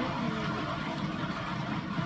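Motorized paint-pour spinner turning a canvas wet with poured acrylic paint, its motor running steadily.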